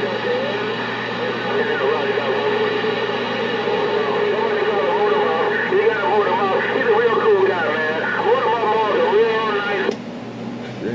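Garbled voices coming over a CB radio speaker on channel 6, thin and narrow-sounding with a steady hum underneath. The reception cuts off suddenly at the end.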